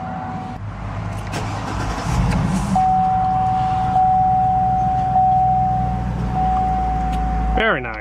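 2004 Cadillac Escalade's V8 being started from inside the cabin: a short crank, the engine catching about two seconds in and flaring, then settling into a steady idle. A steady high-pitched tone runs through it.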